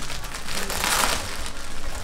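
Clear plastic bag crinkling as it is handled and pulled open by hand, loudest for a moment about a second in.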